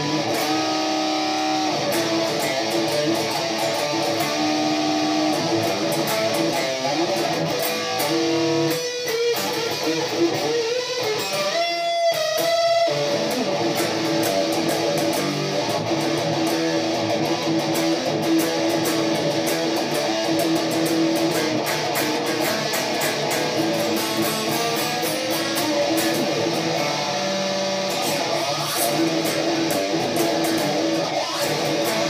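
Electric guitar played through an amplifier: a solo line of held, sustained notes, with notes bent and wavering in pitch about twelve seconds in.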